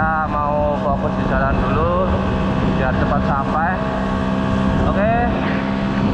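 Old Vespa scooter's two-stroke engine running at a steady cruising hum under way.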